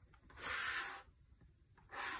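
A large spiral-bound planner being slid and turned on a desktop: one brief rubbing sound, under a second long, starting about a third of a second in, with a second one beginning at the very end.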